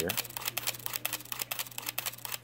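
Nikon D60 digital SLR with its back cover removed, firing a continuous burst: the shutter and mirror click rapidly and evenly, several times a second. The camera keeps cycling without the shutter-stuck error, which has been cleared by cleaning the shutter gear with DeoxIT D5.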